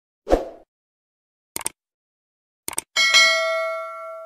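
Subscribe-button animation sound effects: a short pop, a mouse click, then a double click more than a second later, followed about three seconds in by a bell ding that rings out with several tones and slowly fades.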